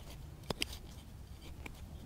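Faint scraping of gloved hands working soil around a freshly planted allium division, with a few small clicks, the sharpest about half a second in.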